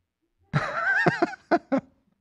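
A person's high, wavering laugh-like squeal lasting about a second, followed by two short breathy bursts.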